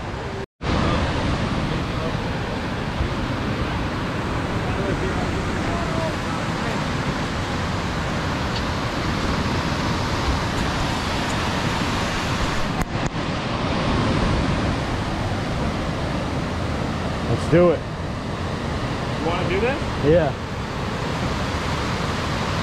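Whitewater rapids of a swollen, muddy river rushing steadily over rock ledges. A few short voices call out near the end.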